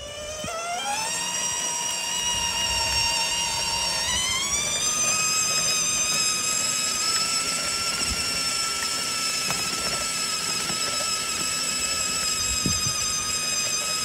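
Stock brushed electric drive motor of a kids' ride-on Audi R8 GT Spyder converted to radio control, whining as the car drives. The pitch rises as it picks up speed just after the start and again about four seconds in, then holds steady.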